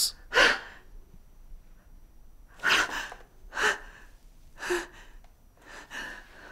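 A woman's heavy breathing: about five short, sharp breaths, spaced a second or so apart.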